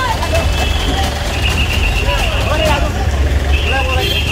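Several people's voices over the steady low rumble of a bus engine idling.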